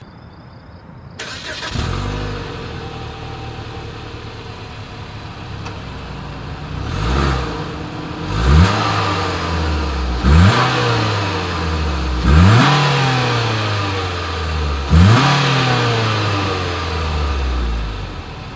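2020 Mitsubishi Outlander Sport's four-cylinder engine heard at its single exhaust outlet. It starts about two seconds in and idles, then is revved about five times, each rev rising quickly and falling slowly back to idle.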